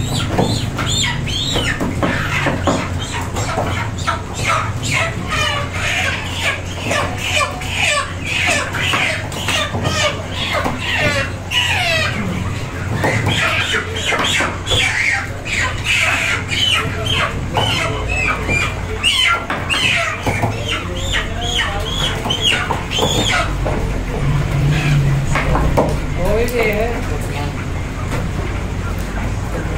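Chickens clucking and squawking in a chicken shop, many short calls one after another, with voices and frequent short knocks alongside.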